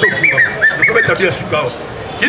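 A man's voice through a microphone and loudspeaker, with a run of short, high chirps over it in the first second or so.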